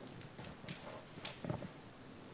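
Quiet room tone with a few faint clicks and soft knocks around the middle.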